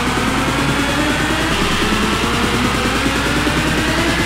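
Continuous DJ mix of Wigan Pier bounce dance music: a fast, steady electronic beat with a synth line that rises in pitch.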